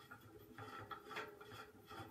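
Faint rubbing and light clicks of a tiered tray's metal centre rod being twisted by hand to screw it into the tray.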